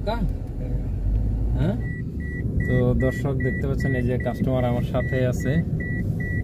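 A car's electronic warning chime beeping at one steady high pitch, about two and a half beeps a second, starting about two seconds in, over the low rumble of the car.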